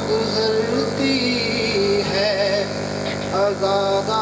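A man chanting a melodic Urdu religious recitation into a microphone, his voice wavering through long held notes with vibrato.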